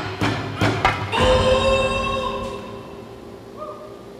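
Electronic music played by hand gestures through wrist-worn motion sensors: a few quick percussive hits, then a held chord about a second in that rings and fades away.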